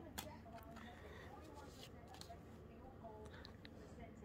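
Near silence with faint scattered ticks and rustles of trading cards being handled and laid down.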